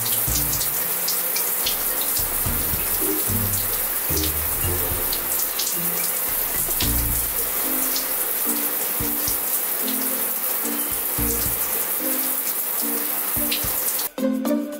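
Shower spray running steadily onto a person, with background music playing over it.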